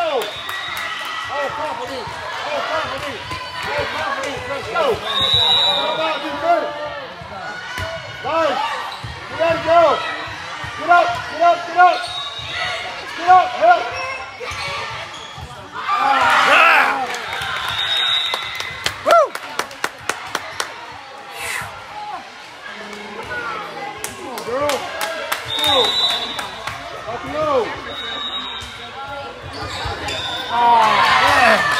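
Indoor volleyball rally: repeated sharp smacks of the ball being hit and hitting the floor, short sneaker squeaks on the court, and indistinct shouting from players and onlookers in a big echoing gym.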